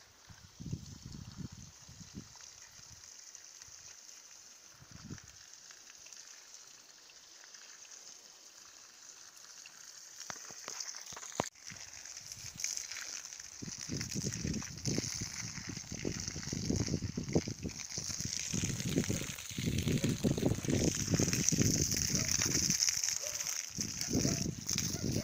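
Water spraying from a garden hose onto a vegetable bed. It is a hiss that grows louder from about halfway through, with an irregular low rumble under it.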